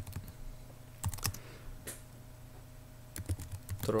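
Computer keyboard typing: irregular keystrokes in small clusters, with a quick run about a second in and another near the end.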